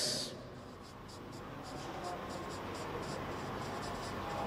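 Marker pen writing on a whiteboard: a run of short, faint scratchy strokes as words are written.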